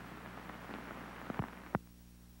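Background hiss and steady low hum of an old recording, with a few sharp clicks about one and a half seconds in, the loudest near the end.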